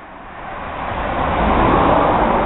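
A road vehicle passing by: a whoosh of road noise that swells over about a second and a half and then starts to fade.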